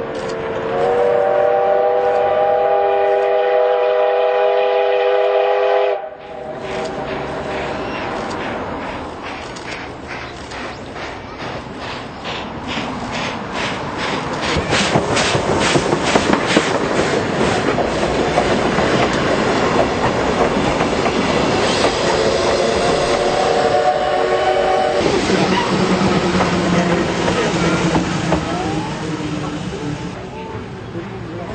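Steam locomotive whistle: a long, chord-like blast of about five seconds. Then comes the rhythmic beat of the locomotive's exhaust, which builds into the loud rumble and wheel clatter of the train passing close. A second, shorter whistle blast follows near the end.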